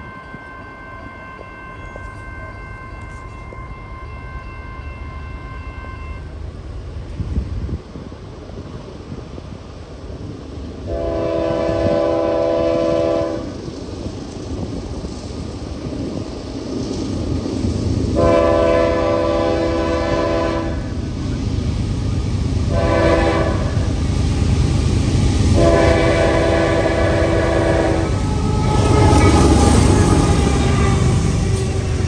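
Freight locomotive horn sounding the grade-crossing signal: long, long, short, long, the last blast held as the locomotive reaches the crossing. Under it the train's rumble grows steadily louder as it approaches.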